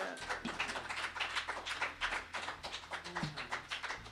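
Applause from a small audience at the end of a song: a scattering of distinct hand claps, fairly quiet.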